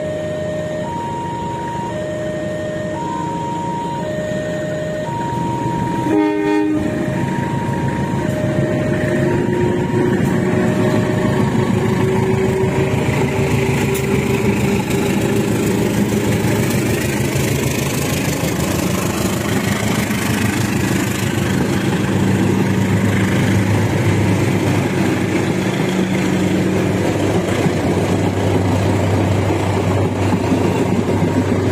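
A diesel locomotive hauling a passenger train pulls away and passes, its engine note rising, with a short horn blast about six seconds in; then the coaches roll by with steady wheel-on-rail noise. A level-crossing alarm rings in two alternating tones through roughly the first ten seconds.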